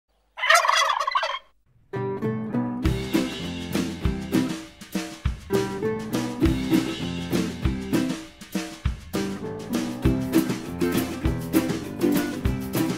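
A turkey gobbles once, a fluttering call of about a second, about half a second in. From about two seconds, the intro of a song starts: ukulele strumming over a steady drum beat.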